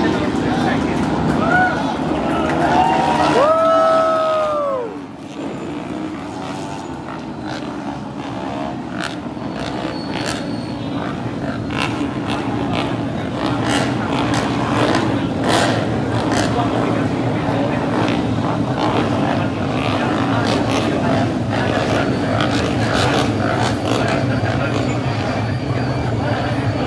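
Racing motorcycle engines on a circuit. About four seconds in, a high engine note climbs and then falls away as a bike passes, followed by a steady drone of engines. Spectators chatter throughout.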